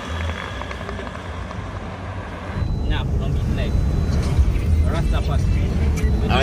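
Background noise that changes abruptly about two and a half seconds in to the steady low rumble of a car's engine and tyres heard inside the cabin of a moving car, with a few faint voices.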